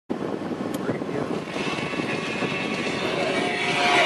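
Becker car radio being tuned: a rush of static with snatches of broadcast, then a music station comes in with steady tones over the last second.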